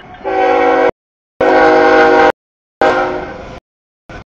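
CSX freight locomotive's air horn sounding a chord in three loud blasts of just under a second each, the middle one the loudest, as the train approaches the grade crossing.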